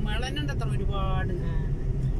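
Steady low engine and road noise of a moving car, heard from inside the cabin, with a person's voice over it for about the first second.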